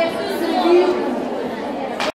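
Speech: a woman's voice at the start, over the chatter of a large audience of students talking in an echoing hall.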